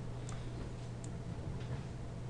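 Two short computer mouse clicks about three-quarters of a second apart, over a steady low electrical hum from the recording setup.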